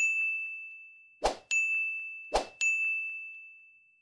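End-screen button sound effects: three times, a sharp click followed by a bright bell-like ding that rings and fades.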